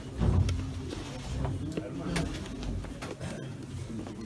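Indistinct low voices murmuring in a hall, with rustling and a few sharp clicks and knocks close to the microphone; a low rumbling bump is loudest just after the start.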